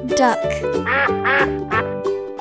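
A duck quacking twice, over cheerful children's music.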